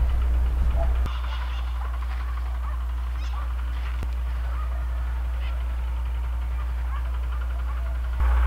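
Wind on the microphone as a steady low rumble in an open field, with a few faint bird chirps. The rumble drops slightly about a second in.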